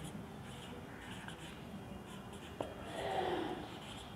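Marker pen writing on a whiteboard: quiet scratchy strokes, with a brief click a little past halfway and slightly louder strokes just after.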